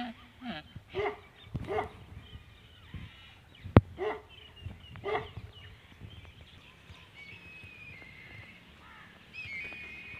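A handful of short animal calls in the first half, a single sharp click near the middle, then small birds chirping in the second half.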